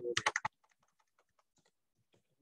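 Typing on a computer keyboard: a quick cluster of louder keystrokes, then a run of faint, rapid key taps, about ten a second, that stops shortly before the end.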